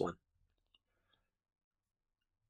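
The end of a spoken word, then near silence: room tone.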